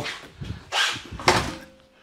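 Glass-paned exterior door swung shut: a swish as it moves, then a sharp knock as it closes against the frame just over a second in.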